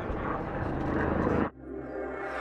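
Busy red-carpet background noise with a steady low rumble and faint voices, cut off suddenly about three-quarters of the way through. A short musical logo sting with held tones takes its place.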